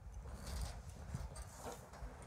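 A pause in the talk: faint low rumble with a few soft, irregular knocks, the sound of a studio microphone picking up the room.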